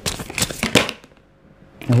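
A deck of tarot cards being shuffled in the hands: a quick run of crisp card clicks that stops about a second in. A woman's voice begins just at the end.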